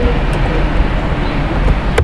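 Steady rushing background noise with a few faint keyboard key clicks.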